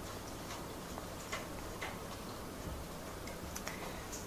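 Faint, irregular light clicks and taps over quiet room noise in a lecture room.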